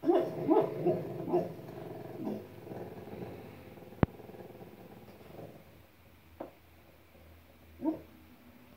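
A pit bull's sleep-talking vocalizations: a quick run of short pitched moans in the first second and a half that trails off over the next two seconds, then one more short call near the end. A single sharp click comes about four seconds in.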